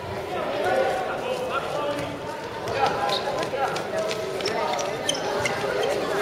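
Several voices shouting and calling over one another during a handball game, with sharp knocks of the ball bouncing on a concrete court, more of them in the second half.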